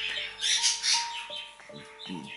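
Soft background music of long held notes, with birds chirping.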